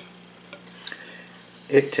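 A metal spoon clicking lightly against a plate a few times as food is scooped up, over a steady low hum.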